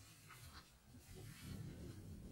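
Near silence: a faint low background rumble with a few faint short high sounds, no clear source.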